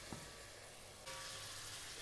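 Faint sizzling of a wine-and-vinegar deglaze reducing in a hot pot of sweet potato and onion, a little louder after about a second.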